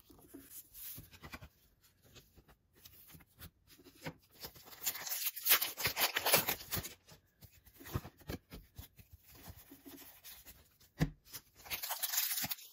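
Foil Pokémon booster-pack wrapper crinkling as it is handled and torn open at the crimp, mixed with the light slide and tap of trading cards. It comes in scattered rustles and clicks, busiest about five to seven seconds in.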